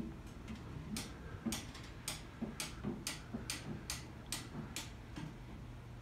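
Faint footsteps on a gritty concrete floor: light, evenly spaced clicks, about two a second, starting about a second in.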